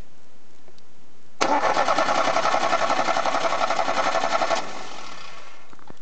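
A VAZ-2107's starter motor cranking its warm four-cylinder engine. The cranking starts suddenly about a second and a half in, pulses rapidly at about eight beats a second for roughly three seconds, then stops.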